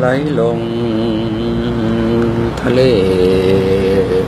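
A voice intoning slow, drawn-out words in a chant-like guided-relaxation style, each syllable held on a steady pitch for a second or two, over a steady low hum.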